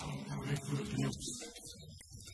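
A cartoon character's voice, lasting about a second, followed by fainter sound from the commercial's soundtrack.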